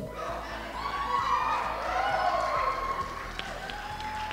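A crowd of guests cheering, with several voices calling out at once, in reaction to a toast.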